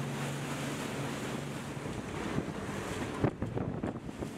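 Rescue speedboat under way: a low steady engine hum under the rush of wind and water. Near the end, wind buffets the microphone in several sharp gusts.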